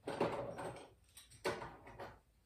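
Handling noise from getting out dog-clipper blades: a rustling clatter at the start, then a sharper knock about a second and a half in.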